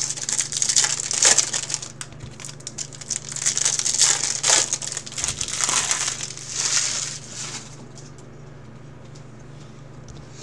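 Plastic trading-card pack wrappers crinkling and crackling in repeated bursts as packs are torn open and handled, dying away after about seven and a half seconds. A steady low hum runs underneath.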